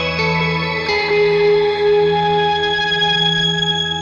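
Electric guitar played through the Keeley Caverns V2 delay/reverb pedal: a few notes picked near the start and about a second in, then a held chord ringing into a long, lingering reverb wash. The sustained high tones fit the pedal's shimmer reverb setting, which adds an octave-up layer.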